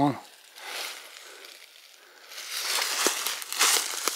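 Dry fallen leaves rustling and crackling as they are disturbed, starting about two seconds in and continuing as a dense crisp rustle.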